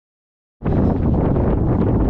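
Dead silence for about half a second, then loud, steady wind buffeting the microphone, heaviest in the low rumble.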